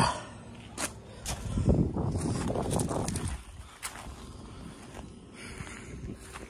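Footsteps on gravel, with a sharp knock at the very start and a few scattered clicks.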